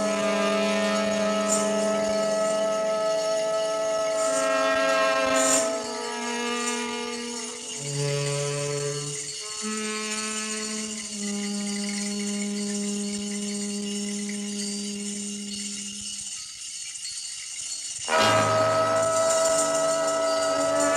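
Large jazz ensemble playing slow, long held chords that shift every few seconds. Near the end the sound thins and drops away briefly before the full band comes back in loud.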